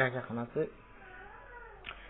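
A man's voice speaking for a moment, then a quiet pause with only faint background sound and a short soft noise near the end.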